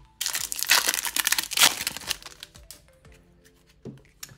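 A foil trading-card pack wrapper crinkling and tearing open for about two seconds, followed by softer clicks of the cards being handled. Faint background music runs underneath.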